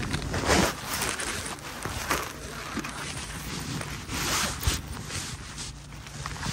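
Jacket fabric rubbing against a chest-mounted phone's microphone as the wearer bends and moves: several rustles, the loudest about half a second in.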